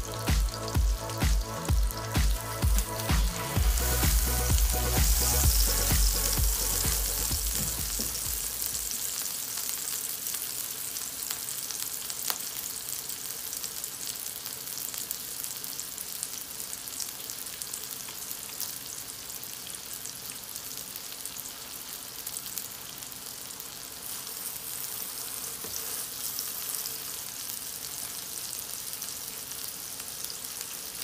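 Wagyu beef burger patties sizzling in a hot nonstick griddle pan: a steady frying crackle. Background music with a beat plays over it for the first several seconds and fades out, leaving the sizzle alone.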